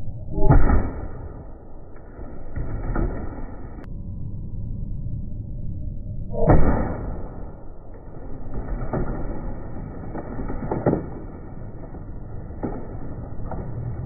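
A car airbag fired under a camp chair goes off with a loud bang twice, about half a second in and again about six and a half seconds in. Each bang is followed by a rush of noise and smaller knocks as the chair and board are thrown about.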